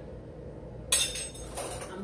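A sharp clink about a second in, followed by a second, lighter clink: a hard kitchen container or utensil knocking against glass as ingredients are handled.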